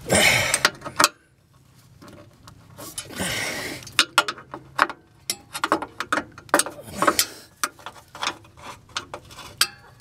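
Screwdriver prying and scraping at a rubber exhaust hanger bushing under a car. Two drawn-out scrapes, one at the start and one about three seconds in, are followed by a string of small metallic clicks and taps as the tool works the hanger.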